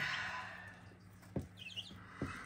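Young chicks peeping softly a few times near the end, after a brief rustle at the start and a single click about halfway through, over a low steady hum.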